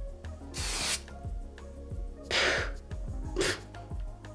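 Kryolan fixing spray misted onto the face in short hissing bursts, the loudest and sharpest about half a second in, with two weaker bursts later.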